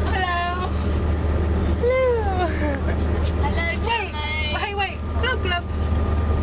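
Steady low drone of a coach bus driving, heard from inside the passenger cabin, under voices: a short high-pitched cry at the start, a long falling vocal sound about two seconds in, then chatter.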